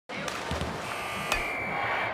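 Sound effects for an animated logo intro: a rushing noise bed with sharp hits, the loudest just over a second in, and a steady high tone held through the second half.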